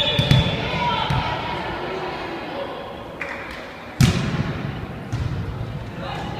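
A volleyball struck hard about four seconds in: one sharp smack that rings on in a large echoing gym, with smaller ball thuds near the start and players' voices around it.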